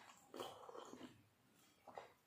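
A quiet slurp of thin masoor dal sipped from a small steel bowl, lasting under a second, followed near the end by a short tick.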